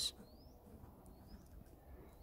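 Quiet pen writing on a paper notepad, with two short, faint rising bird chirps in the background early on.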